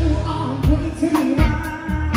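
A live band playing a song, with a voice singing over drums, bass notes, keyboard and electric guitar, and several drum hits.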